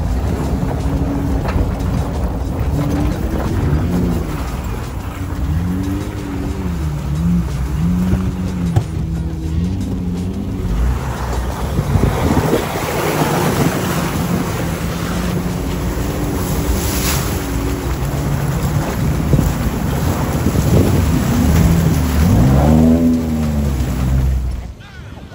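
Off-road 4x4's engine running at low speed, its pitch rising and falling again and again as it is worked over rough ground, with a rushing wash of water splashing from about halfway through as the vehicles ford a shallow river.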